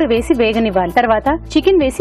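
Speech: a woman talking throughout.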